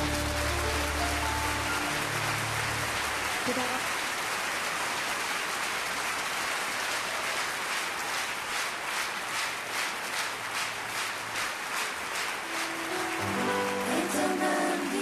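Concert hall audience applauding as the last notes of a song die away. About halfway through, the clapping falls into a steady rhythm in unison, and music starts again near the end.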